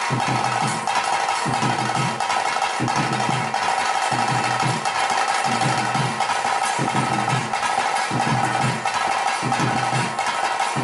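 Traditional kola ritual music: drums beating a steady rhythm of low strokes under a continuous high, pitched drone.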